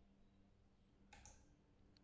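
Near silence: faint room tone with a low hum, and one faint click a little over a second in.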